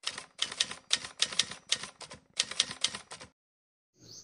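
Typewriter keystroke sound effect: a run of irregular clacks, about four a second, stopping a little past three seconds in.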